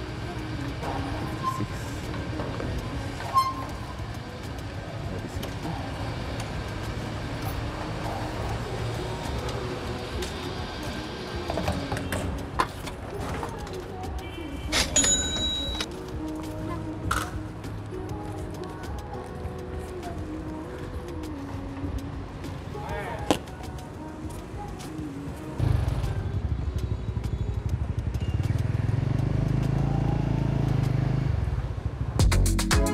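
Background music and voices over petrol-station sounds; about four seconds before the end a motorbike engine comes in loud and keeps running as the bike pulls away.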